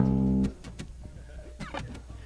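Acoustic guitar: a chord rings and is stopped about half a second in, followed by faint, quiet picking.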